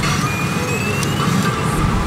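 Pachinko parlor din: a steady roar of many machines' music and electronic effects, with a slowly rising electronic tone about half a second in.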